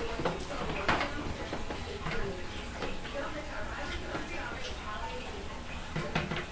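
Light clicks and knocks of small objects being handled, the clearest about a second in, over faint voices in the background.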